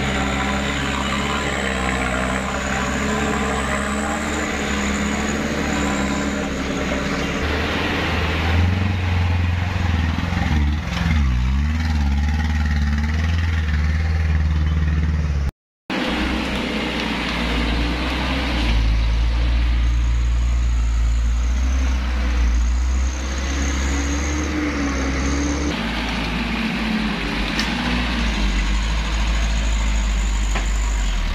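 Truck diesel engines running and revving under load, the pitch rising and falling. The sound drops out completely for a moment about halfway through.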